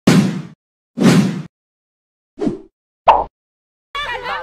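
Sound effects of an animated intro graphic: two half-second rushes of noise about a second apart, then two short hits about two and a half and three seconds in, with dead silence between them.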